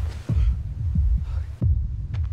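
Deep, low thumps repeating like a slow heartbeat, about four of them, each dropping slightly in pitch: film-trailer sound design. Underneath is a rushing-water hiss from river rapids that cuts off about one and a half seconds in.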